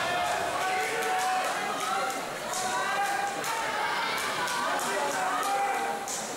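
Hubbub of many people talking at once, echoing in a large indoor swimming hall, with scattered short sharp clicks.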